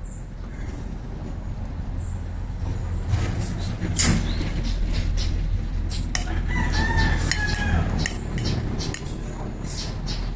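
A rooster crowing once, a long call from about six to eight seconds in, over a steady low rumble. Scattered light clicks and scrapes of a spatula on a dish.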